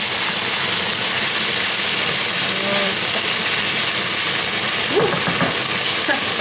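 Minced pork and sliced onion frying in a nonstick frying pan, a steady sizzle, with a wooden spoon stirring through the meat.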